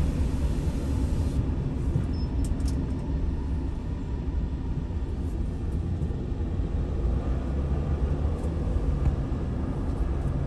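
Steady low road and engine rumble inside a car cruising on a freeway, with a few faint clicks about two and a half seconds in.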